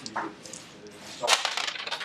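A handful of plastic dice thrown onto a wargaming board, clattering and rattling as they land and roll, starting a little past halfway through.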